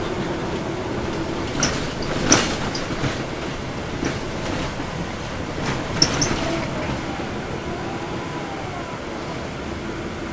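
Cabin noise inside a NABI 416.15 transit bus under way: the steady hum of its Cummins ISL9 diesel and drivetrain with road noise, broken by several sharp clacks, the loudest about two seconds in.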